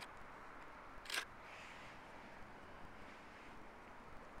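Faint steady background hiss, broken about a second in by one short whirr-click from the camera's lens motor as it refocuses.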